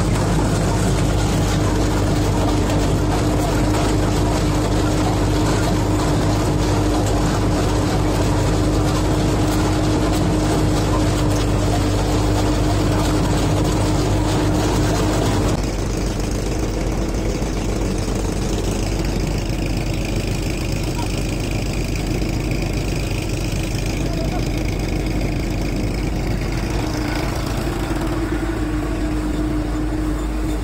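Tractor-driven groundnut (peanut) thresher running steadily under load, a continuous mechanical drone with a constant hum as threshed peanuts stream out of its chute. About halfway through, the sound drops slightly and changes character.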